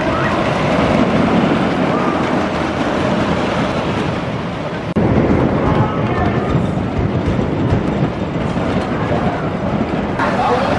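Wooden roller coaster train rolling along its wooden track with a steady, dense rumble, with voices mixed in. The sound jumps suddenly about halfway through.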